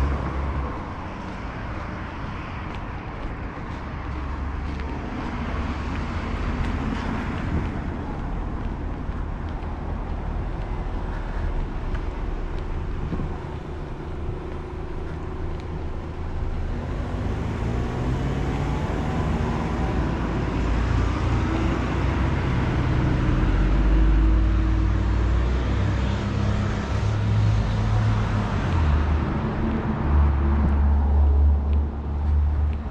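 Street traffic: cars driving past with a steady low rumble, and in the second half a vehicle engine whose pitch rises and falls as it goes by.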